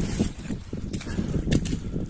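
Boots squelching and sloshing through deep mud and standing water, several irregular steps.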